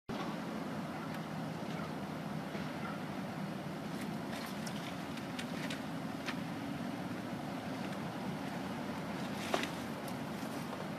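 Steady low rumble with a few light clicks in the middle and one sharper click near the end.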